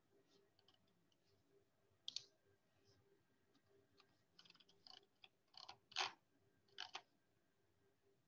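Near-silent room tone with a few faint, scattered clicks of a computer mouse, one about two seconds in and a small cluster later on.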